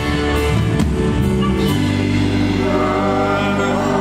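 Live folk-rock band playing: violin with acoustic and electric guitars. Drum and cymbal hits in the first two seconds give way to a long held chord, with voices singing over it.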